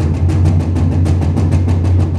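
Drum solo on a drum kit: a fast, even run of strokes, about nine a second, over a steady low drum rumble.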